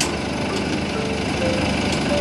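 School van's engine idling close by, a steady rough running noise, with faint background music underneath.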